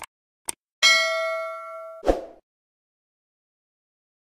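Subscribe-animation sound effects: two mouse clicks about half a second apart, then a bright notification-bell ding that rings for about a second, cut off by a short low thud.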